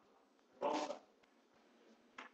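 A single brief vocal sound from a person, under half a second long, about half a second in, over faint room noise.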